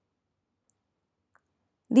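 Near silence with a single faint click about a third of the way in, then a woman's voice starts just before the end.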